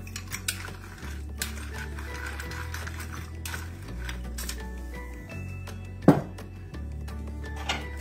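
Hand pepper mill being twisted over a glass bowl, a run of small gritty clicks and grinding, with one louder knock about six seconds in. Background music with a slow, steady bass line plays under it.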